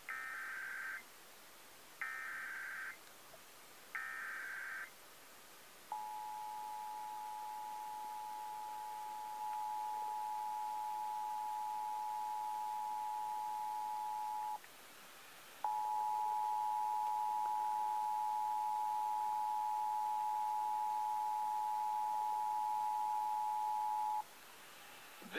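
Emergency Alert System monthly test broadcast by 95.9 WATD-FM, played through an iPad's speaker. It opens with three one-second bursts of SAME header data tones. Then comes the steady two-tone attention signal, which breaks off for about a second midway and resumes louder.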